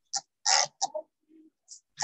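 Hand-pumped spray bottle squirting: several short hissing spurts in quick succession in the first second, and one more near the end, over broken fragments of a woman's speech.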